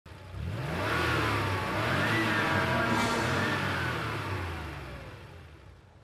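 A vehicle engine revving, its pitch rising and falling, then fading away towards the end.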